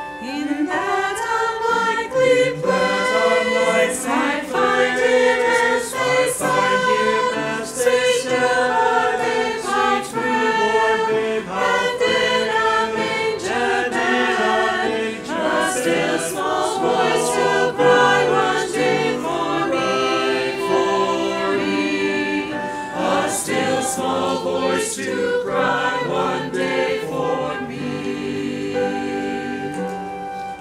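Church choir singing.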